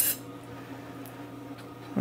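A high hiss cuts off suddenly at the start, leaving a faint steady low hum.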